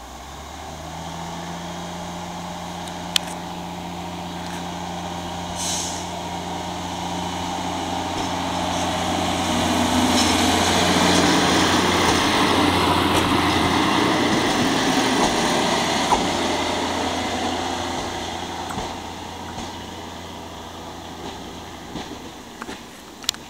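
Diesel engine of a ČD class 810 railbus running steadily under load as it pulls away and passes close by, growing louder to a peak around the middle and then fading as it moves off. A short hiss comes about a quarter of the way in.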